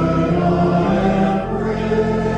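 Congregation singing a hymn with organ accompaniment, the sustained chords changing a few times.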